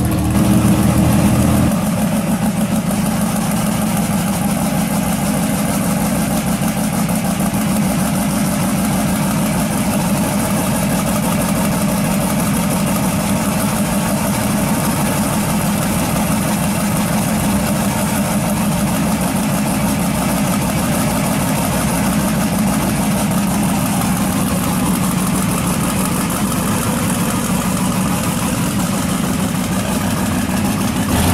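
Twin-turbocharged drag car engine idling steadily while being warmed up, the car up on stands. For the first two seconds a different car's engine is heard before the sound changes.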